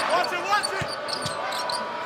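Arena crowd noise with a basketball being dribbled on the hardwood court, a couple of short bounces heard through it.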